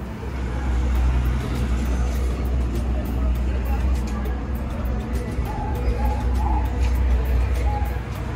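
Busy outdoor street-fair ambience: a steady low rumble under a wash of distant voices and faint music.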